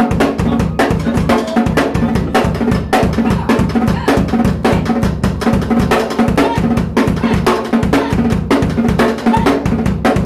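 Acoustic drum kit played in a fast improvised solo with a Latin feel: dense, rapid strokes on snare, toms and cymbals over a busy bass drum, without a break.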